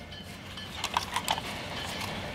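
A handful of faint plastic clicks and rattles from a Blitz C20 pricing gun being handled as its front section is pulled open, clustered about a second in.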